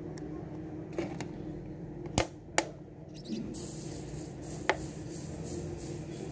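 Low steady room hum with about five short, sharp clicks scattered through it, the loudest a little over two seconds in.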